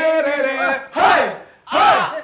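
A group of young men chanting together in loud, sustained voices, then shouting twice: one short call about a second in and another near the end.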